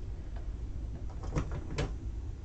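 Light handling sounds on a craft table: a couple of short clicks and paper rustles near the end, over a steady low hum.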